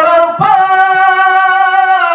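A man's voice chanting a Bangla sermon in a sung, melodic style into a microphone. It slides up briefly about half a second in, then holds one long steady note.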